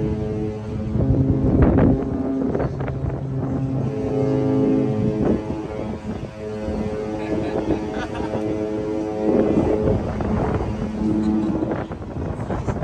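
Cruise ship horn sounding several long, deep, multi-note blasts in greeting as two sister cruise ships pass close at sea, with people on deck shouting over it.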